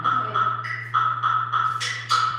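Live band music in a quiet passage: a high, ping-like note repeats about three times a second over a held low bass note. Sharp percussion hits begin near the end.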